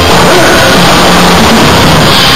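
Live rock band playing a loud disco-rock number, the recording steady and very loud throughout.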